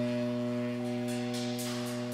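Saxophone holding one steady low note, rich in overtones, in a free-improvised performance. From about halfway through, short hissy scrapes sound faintly above it.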